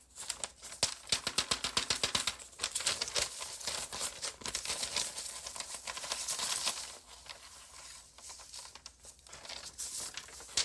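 Sheets of drawing paper rustling and crinkling as they are handled and flipped, a dense run of short crackling clicks that goes quieter for a couple of seconds near the end.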